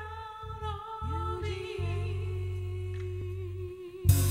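Music: a slow intro of long held, hummed vocal notes over deep sustained bass notes, with a second voice sliding up into a held note about a second in.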